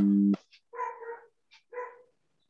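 A steady hum of several low tones cuts off just after the start. Then a dog barks twice, the barks about a second apart.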